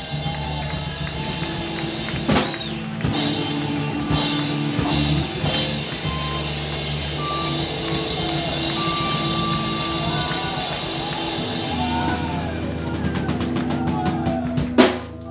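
Punk rock band playing live: distorted electric guitars and bass hold sustained notes over a drum kit, with a fast run of drum hits near the end.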